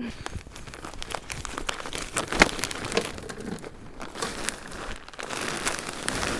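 Plastic bag of raised bed soil mix crinkling and rustling as it is handled and lifted, with irregular crackles throughout that grow denser near the end.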